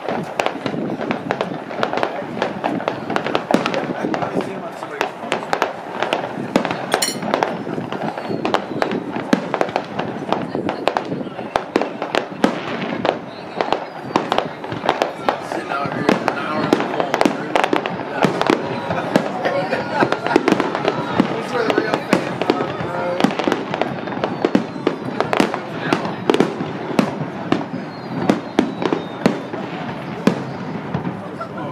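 A fireworks display: aerial shells going off in rapid, irregular bangs and crackles, over the chatter of people talking.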